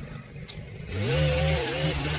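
Handheld gas-powered stick edger running low, then throttled up about a second in, its engine rising in pitch and holding at high speed as it cuts the lawn edge.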